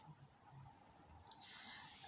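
Near silence with a single faint click a little over a second in, the click of a computer mouse.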